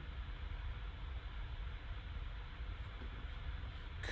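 Faint steady background noise: room tone with a low hum underneath and no distinct event.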